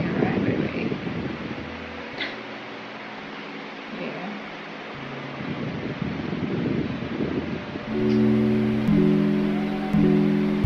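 Strummed acoustic guitar music comes in about eight seconds in, playing sustained chords that change about once a second; before it there is only soft, wordless vocal sound.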